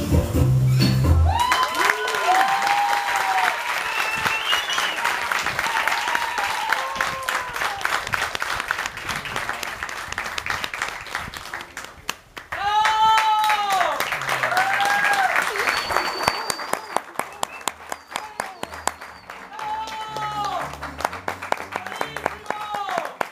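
Music stops abruptly about a second in. An audience then applauds, with repeated rising-and-falling whoops and cheers. The applause cuts out briefly just after the middle, comes back, and thins toward the end.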